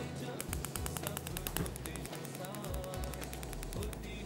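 Rapid, even clicking for about a second and a half, a gas hob's spark igniter firing to light the burner under a pan. Faint voices and background music sit underneath.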